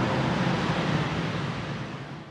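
A steady rushing noise that slowly fades out, dying away just after the end.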